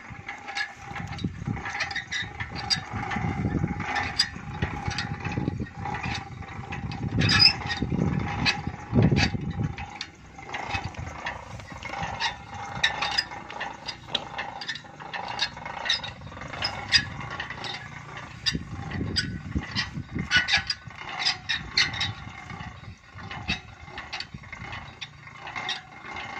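Geared borewell pump lifting winch at work, its gear teeth and ratchet pawl clicking irregularly as the rope and pump pipe are hauled up out of the borewell. Louder low rumbling comes and goes in the first ten seconds and again later.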